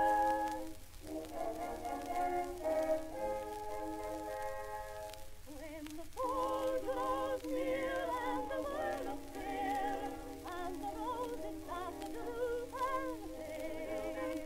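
Background music: an old early-1900s vocal recording, singing with a pronounced vibrato and a thin, narrow sound lacking deep bass and high treble. The phrases pause briefly about a second in and again around five to six seconds in.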